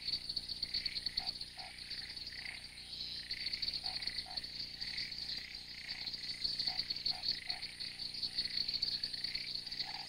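Wetland night chorus of frogs and insects: a steady high pulsing trill with a call repeating about twice a second over it, and short lower frog calls in groups of two or three every few seconds.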